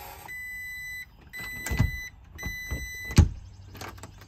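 YIMOOCH electronic keypad deadbolt locking: three long, steady electronic beeps from the keypad, with a few clicks and clunks from the lock. The loudest clunk comes just after the third beep.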